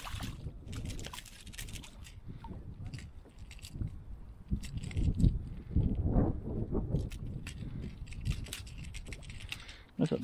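A landed ladyfish being unhooked in a landing net against the side of a kayak: scattered clicks and knocks of the lure, net and hull, with a few louder splashy bursts in the middle, over low wind rumble on the microphone.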